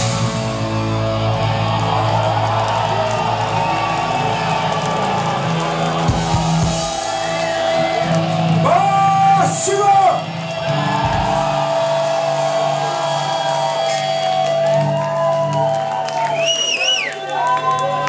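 Electric guitars of a live rock band playing on without drums, holding long ringing notes at the end of a song. Voices shout and whoop over them a couple of times, about halfway through and near the end.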